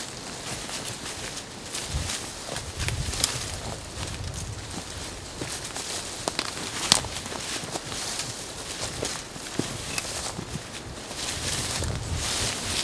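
Footsteps walking through dry fallen leaves and brush: an irregular run of crackling steps with a few sharper cracks.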